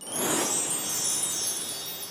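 A bright, glittering chime sting that starts suddenly and slowly fades: the sparkle sound effect of a logo bumper.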